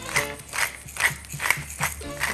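Hand pepper mill grinding black peppercorns into a bowl, in short gritty strokes about twice a second, over steady background music.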